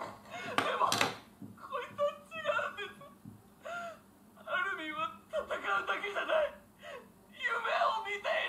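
A woman crying, with whimpers and a sharp gasping breath about a second in, over Japanese anime dialogue.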